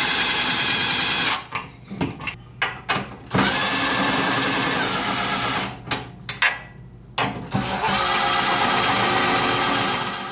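Cordless impact driver running in three long pulls of about two seconds each, with short trigger blips between, driving bolts into the steel panels of a CNC router frame.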